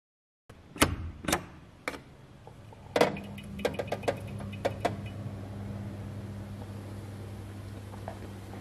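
Several sharp wooden clicks and knocks from the pipe organ's console fittings. At about three seconds a click is followed by a steady low electric hum that holds from then on: the organ's blower motor switched on and running, with no note played.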